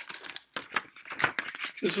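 Plastic Blu-ray case being handled and shut: a quick run of small plastic clicks and rattles, with a man's voice starting near the end.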